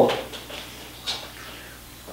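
Quiet room with a faint brush of handling noise about a second in, as a cast iron Dutch oven is reached for and lifted; the tail of a spoken word opens.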